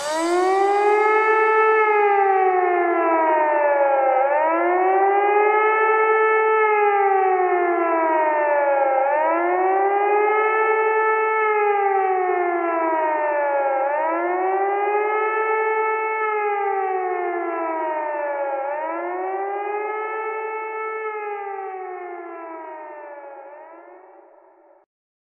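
A siren wailing in a slow rise-and-fall, two tones sounding together: each cycle climbs quickly and sinks slowly over about five seconds, five times over, fading out near the end.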